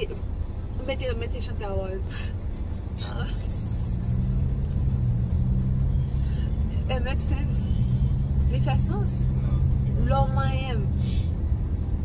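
Low rumble of a car's cabin, joined about three and a half seconds in by a steady low hum that holds to near the end, with short snatches of talk and laughter over it.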